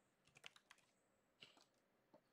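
A few faint computer keyboard keystrokes in two short runs, one in the first half-second and another about one and a half seconds in.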